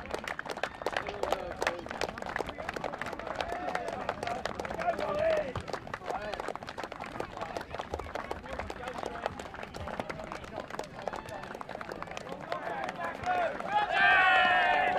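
Hands clapping in a quick, uneven patter from a small group, with voices calling out among the claps.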